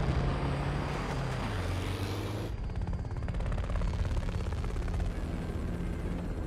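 A deep explosion rumble dies away, then about two and a half seconds in a helicopter takes over: a steady, fast rotor beat over a low engine hum.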